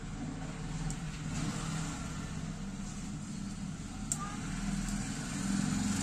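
Steady low background rumble, with a sharp faint click about four seconds in.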